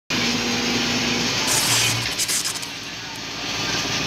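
Fire engine running at a house fire: a steady engine hum under a loud, noisy wash, with a brief louder hiss about one and a half seconds in.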